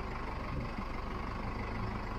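Bread-truck step van's engine running at low speed while driving off-road, heard from inside the cab as a steady low rumble.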